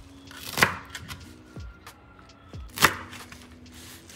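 Kitchen knife chopping fresh mint, coriander and green chillies on a wooden cutting board: two loud chops about two seconds apart, with lighter knife taps in between.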